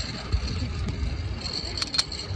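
Zip line trolley pulley rolling on the steel cable, a thin high whir that gets louder in the second half as the ride gets under way, with a few sharp clicks of the hardware near the end. Wind buffets the microphone throughout with a low rumble.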